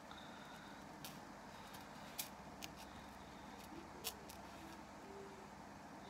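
A few faint, sharp clicks spread across a few seconds, as small objects are handled on a wooden tabletop, over quiet room hiss.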